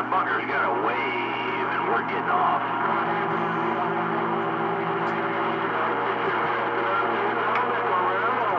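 CB radio receiving a garbled, distorted transmission: warbling, voice-like sound for the first couple of seconds, then a steady humming set of tones over static with no clear words.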